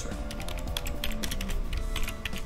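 Computer keyboard typing: a quick, irregular run of keystrokes. Soft background music with steady tones plays underneath.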